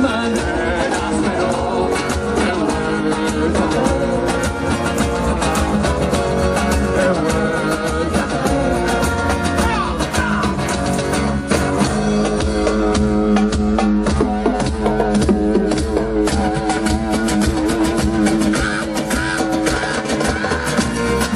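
Live rock band with Andean roots playing: guitars and percussion with sung vocals, the beat steady throughout. The low end grows fuller from about twelve seconds in.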